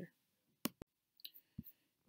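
Two quick, sharp clicks about a sixth of a second apart, a little over half a second in, in an otherwise near-silent pause.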